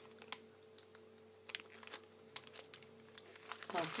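Plastic snack wrappers crinkling in short, scattered crackles as individually wrapped wafers are handled, over a faint steady hum.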